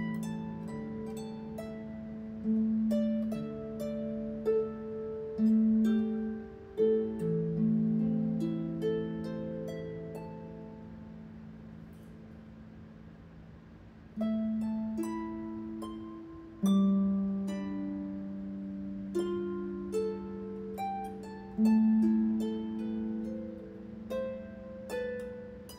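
Lever harp played solo: plucked notes and chords that ring on, with a softer, sparser passage about halfway through before fuller chords come back.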